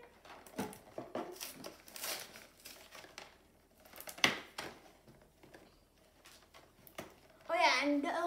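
Cardboard collector box being opened by hand: scattered rustles and sharp clicks as the top flap and its seal are pulled at, the loudest about four seconds in. A child's voice starts near the end.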